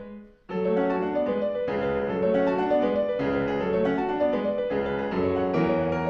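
Steinway grand piano played solo in a classical style: a chord fades away, and about half a second in the playing starts again and runs on steadily through a flowing passage.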